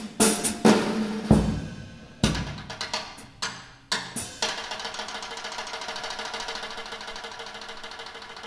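Drum kit played with sticks: a string of sharp snare and cymbal strikes with a couple of deep drum hits, then, a little past halfway, a fast, even roll that carries on steadily.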